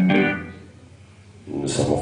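A sustained chord from the live band's amplified instruments dies away within the first half-second, leaving a brief lull. A man's spoken voice starts up again through the PA about a second and a half in.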